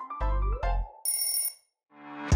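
Electronic background music with deep drum beats and a tone gliding upward. It ends in a brief high, bell-like tone, then a moment of silence.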